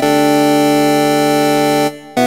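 Synthesizer chord from IK Multimedia Syntronik's J-60 (a Roland Juno-60 model) on a square-wave-plus-sub-oscillator patch, held steady for almost two seconds and then released abruptly near the end.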